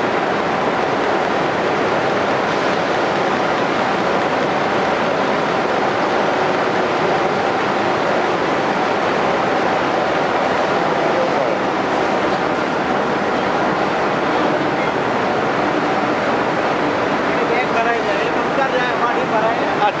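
Processing machinery in a plant running steadily: a continuous noise with faint steady hum tones. Voices come in near the end.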